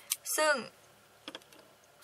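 A few light, sharp clicks around one short spoken word, then quiet room tone.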